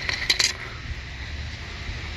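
A quick cluster of light, sharp metallic clinks in the first half second, small metal parts knocking together, then nothing but a low background hum.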